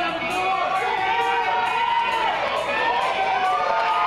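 Audience cheering and yelling, many voices at once, loud and sustained, with scattered clapping.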